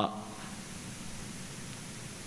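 Steady hiss of room tone and recording noise with a faint low hum, during a pause in a talk.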